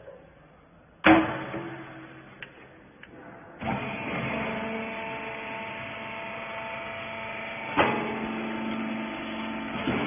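Small rag baler: a loud metal clang about a second in as its hopper lid is shut, then from about three and a half seconds the machine's motor runs with a steady hum while it presses the rags, with another metal clank near eight seconds.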